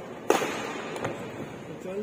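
Badminton racket striking a shuttlecock: one sharp, loud crack about a third of a second in that rings in the hall, then a fainter hit about a second in.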